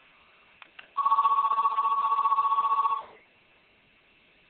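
A telephone's electronic ringer sounding one ring of about two seconds: two close high tones trilling rapidly, then stopping abruptly.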